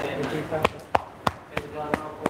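A quick series of sharp slaps or knocks, about three a second, with brief bits of voice between them.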